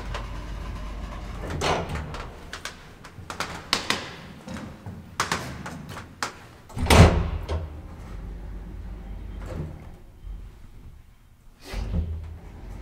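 ASEA-Graham elevator's sliding car door working, with scattered clicks and knocks and a loud thump about seven seconds in, the loudest sound. Another thump comes near the end.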